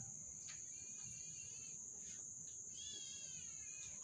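Two wavering animal calls, each about a second long, one after the other, over a steady high-pitched drone of night insects.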